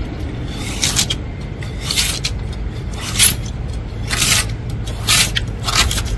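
Long-handled scraper blade pushed across a glass pane in about six short strokes, roughly one a second, shaving adhesive window film off the glass a little at a time.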